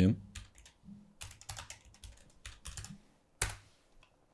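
Computer keyboard typing: a quick run of light key clicks, with one louder click a little before the end.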